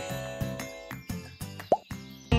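Added sound effects over the fading tail of background music: a twinkling chime dies away with a few light clicks, then a short rising cartoon 'bloop' sounds near the end.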